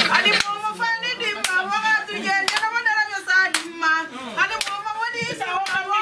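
Rhythmic hand clapping, about one clap a second, under several voices.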